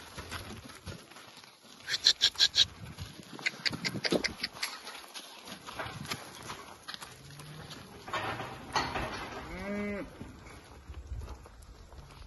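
Black cattle milling in a yard. About two seconds in there is a quick run of five short, sharp 'tit' calls from a person urging them along. In the second half come two short, low moos, the second one rising and falling in pitch.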